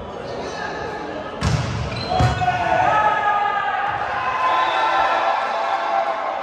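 A volleyball struck twice by players' hands, about a second and a half in and again under a second later, each hit echoing in a large indoor hall, followed by players shouting.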